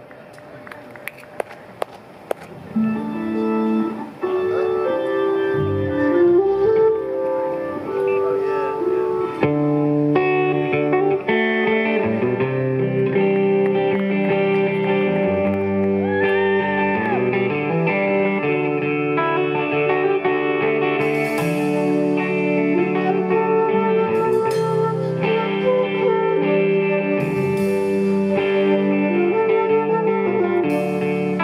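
A live band with electric guitar, bass and keyboards starts a song after a couple of quiet seconds with a few clicks. A flute plays over the band later on.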